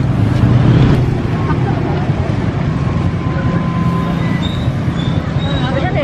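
Road traffic: a steady low rumble of passing motorcycles and cars.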